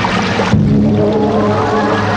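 Film background score of sustained low held chords, shifting to a new chord about half a second in.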